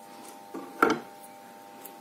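A single short knock a little under a second in, as a pair of scissors is set down on a wooden tabletop, over a steady faint hum.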